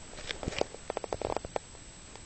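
A cat licking her fur while grooming: a short run of quick licks, about ten a second, that stops about a second and a half in.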